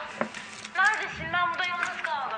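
Speech: a voice saying two short phrases.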